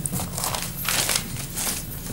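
Paper rustling and crinkling in a run of irregular crackles, as sheets are handled.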